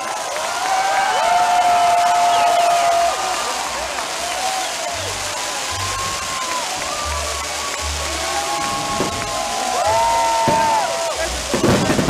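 Background music with gliding tones and a low bass line, over a steady hissing crackle of fireworks with dull booms; a quick run of sharp bangs near the end.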